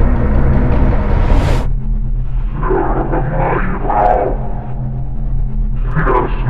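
Dramatic film score with timpani that cuts off abruptly about a second and a half in. A low steady hum follows, with indistinct voice-like sounds over it.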